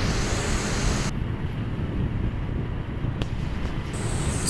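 Steady low rumble of wind buffeting a phone microphone while it moves along a street, with no distinct events.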